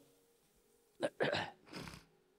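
A man sniffling close to a handheld microphone: three short breathy sniffs in the second half, after a second of quiet.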